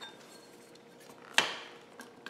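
A sharpening stone knocking once against a hard surface as it is picked up and handled, a single sharp clack about one and a half seconds in that fades quickly.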